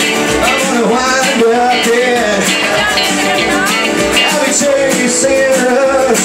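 Live country band music, loud and steady, led by a strummed acoustic guitar, with a melodic line gliding between notes over it.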